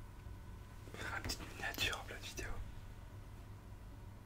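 A man whispering for about a second and a half, starting about a second in.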